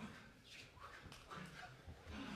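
Faint, short breathy exhales and low vocal grunts from dancers in close physical contact, with a couple of soft taps.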